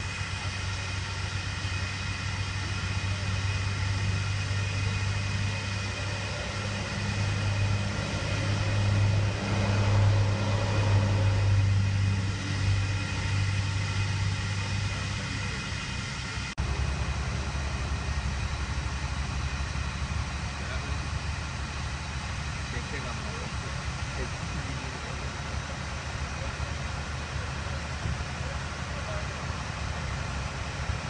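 An engine idling, a steady low hum that holds one pitch. Its sound changes abruptly a little over halfway through.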